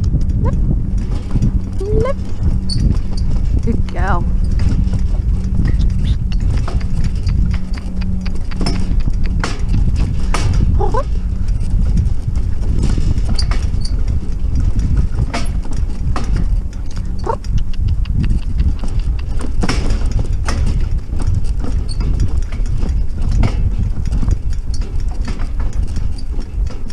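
Pony in harness trotting with a light two-wheeled cart over a grass track: hoofbeats under a steady low rumble from the wheels, with frequent clicks and knocks from the cart and harness.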